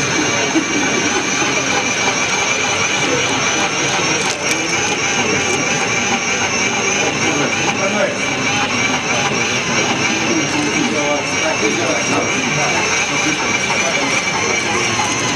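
Steady machinery noise with a high, even whine held on two pitches, running without a break, under low murmured voices.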